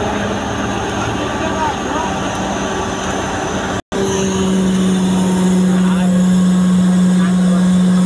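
Truck-mounted mobile crane running: a loud, steady droning hum from its engine and hydraulics. The hum grows louder after a brief break in the sound just before halfway.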